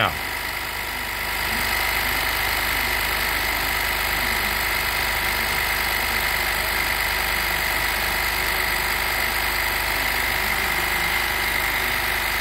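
Mitsubishi PLK2516 industrial pattern sewing machine running steadily to drive its bobbin winder, winding nylon thread onto the bobbin. It comes up to speed about a second in and then holds an even mechanical hum with a high steady whine.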